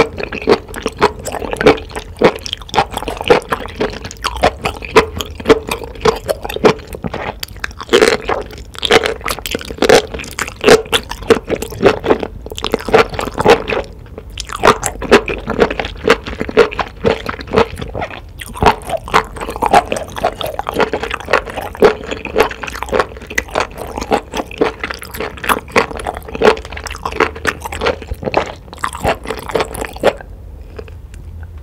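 Close-miked chewing of enoki mushrooms in a sticky spicy black bean sauce: wet squishing and clicking mouth sounds in a steady rhythm of about two chews a second.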